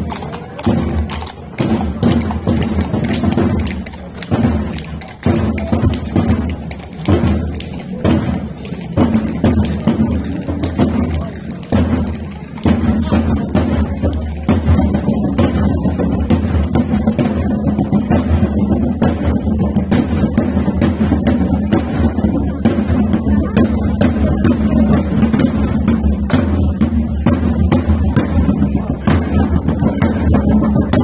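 Procession drums, large side-slung drums struck with sticks, beating a marching rhythm. The strokes are spaced and uneven at first, then become dense and steady about twelve seconds in.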